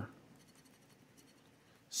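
Faint scratching of the coating on a scratch-off lottery ticket with a handheld scratcher tool, uncovering numbers.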